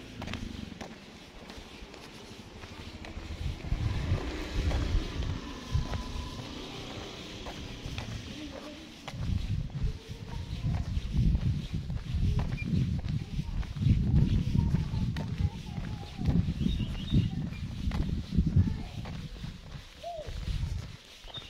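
Wind buffeting a handheld camera's microphone in irregular low gusts, with faint distant voices or animal calls underneath.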